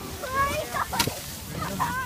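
Short, high children's voices, with one sharp snap or crack about halfway through.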